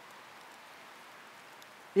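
Light rain falling: a faint, steady hiss with no distinct drops or other events.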